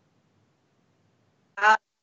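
Near silence, then a single short spoken 'uh' near the end.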